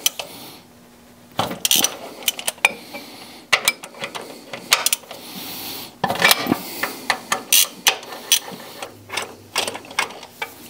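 Hand ratchet with a socket on a long extension clicking in short, irregular runs as bolts on a transmission bearing retainer plate are loosened.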